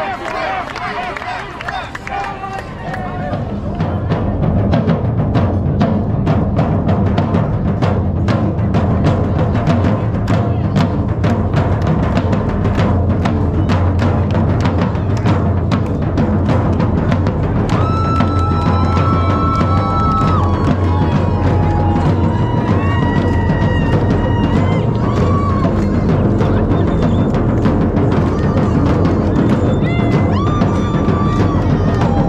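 Crowd voices, then from about four seconds in a loud drum ensemble of a kettle drum (timpani) and large bass drums beaten with mallets in a fast, driving rhythm. High held notes come in over the drumming in the second half.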